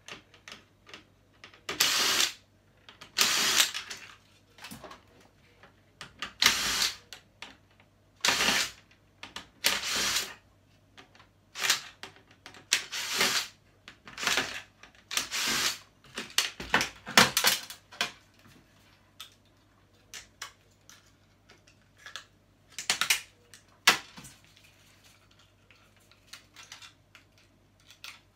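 Cordless drill-driver running in about a dozen short, irregular bursts as it backs screws out of a flat-screen TV's sheet-metal chassis, with the clatter of handled parts between the bursts.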